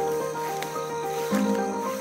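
Instrumental background music: sustained chords with a simple melody on top, the chord changing just over a second in.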